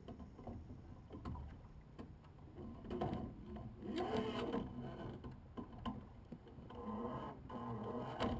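A single rowing scull beside a dock: scattered knocks and clicks from the oars and rigging, with a few bursts of water sloshing against the hull.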